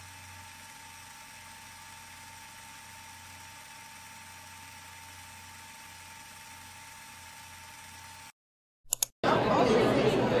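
Faint steady hiss with a thin constant tone and a low hum. About nine seconds in it cuts out, a couple of clicks follow, and loud chatter of many voices in a school hallway begins and is the loudest sound.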